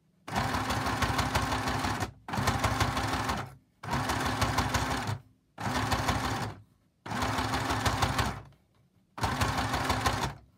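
Domestic electric sewing machine zigzag-stitching a fabric ruffle onto a paper card, running in about six short bursts of rapid needle strokes with brief stops between them as the fabric is folded.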